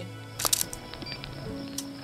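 DSLR camera shutter firing: a quick double click about half a second in and a fainter single click near the end, over background music.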